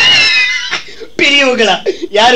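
A single drawn-out cat meow, high-pitched, rising and then falling, lasting well under a second, with talk resuming about a second later.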